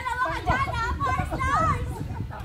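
Players in a running tag game shouting and squealing excitedly in high-pitched voices, with laughter mixed in.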